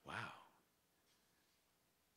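A man's short voiced sigh into a microphone, lasting about half a second at the start, followed by near silence.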